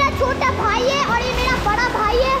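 Children's high-pitched voices calling and shouting over a steady background noise.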